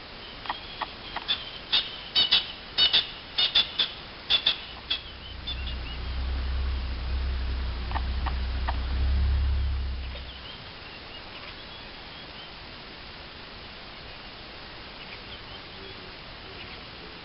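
A quick series of about a dozen sharp squeaky chirps from a small animal or bird calling, bunched in the first five seconds, with two more a few seconds later. A low rumble sets in about halfway through the chirping and stops suddenly after about five seconds.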